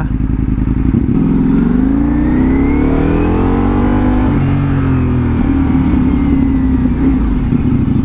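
Ducati Multistrada V4 Pikes Peak's 1158 cc V4 engine under way: its pitch climbs as the bike accelerates, drops sharply about four seconds in, then holds steady.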